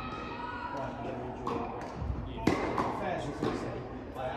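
Tennis ball knocks, racket hits and bounces on the court surface, a series of sharp knocks with the loudest about two and a half seconds in, over voices.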